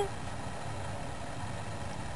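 Steady low background hum of room noise, with no distinct events.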